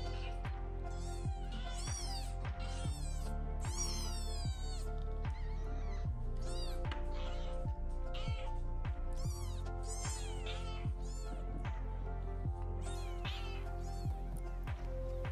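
Young British Shorthair kittens mewing over and over in short, high, rising-and-falling cries, one or two a second, after being taken out of the nest box. These are calls to the mother, meant to bring her out of the box. Background music with a steady beat plays underneath.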